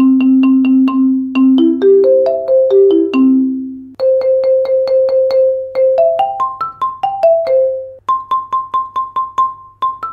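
Marimba played with Dragonfly Percussion M2 medium-soft mallets: fast repeated two-mallet strokes, about five a second. They start on a low note, climb in short runs, then repeat on middle and higher notes, with brief breaks about four and eight seconds in. A faint steady low hum lies underneath.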